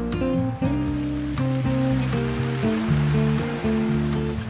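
Slow, gentle classical guitar playing plucked notes over the wash of ocean waves on a beach, one wave swelling in around the middle.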